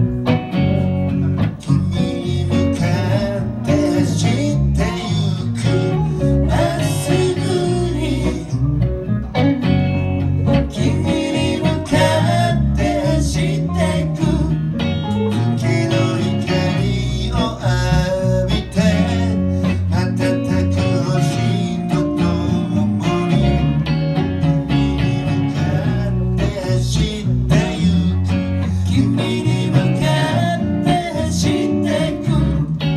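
A live band playing a song: a woman singing over electric guitars, an acoustic guitar and bass, with a bluesy feel.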